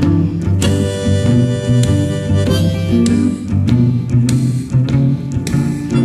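Instrumental blues passage between sung verses: guitar over a steady bass line, with long held notes above it.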